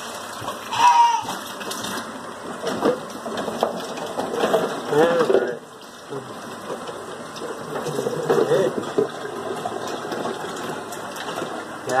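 Water running in a kitchen sink, with the drain gurgling as the sink backs up.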